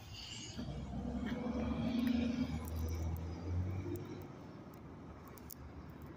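A motor vehicle passing: a low engine rumble that swells over the first two seconds and fades away by about four seconds in.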